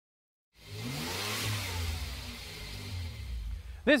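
A car engine starts about half a second in, its pitch rising and then falling away, with a rush of air and tyre noise loudest about a second and a half in, like a car driving past.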